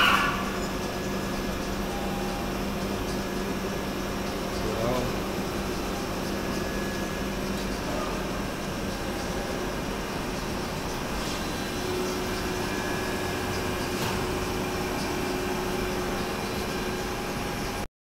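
Tacchella 1018UM cylindrical grinder running: a steady machine hum with an even low tone, unchanging in level.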